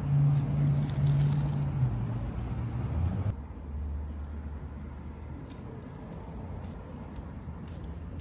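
Street traffic: the low, steady hum of a nearby vehicle engine, loudest in the first few seconds, then cutting abruptly about three seconds in to a quieter, lower traffic hum.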